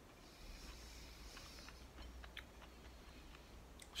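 Faint chewing of a mouthful of fresh fig, with a few soft mouth clicks over near silence.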